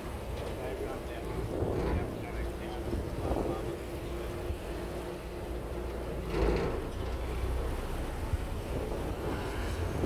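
A boat at sea: a steady low rumble of the vessel with wind on the microphone, and faint voices of people on board now and then.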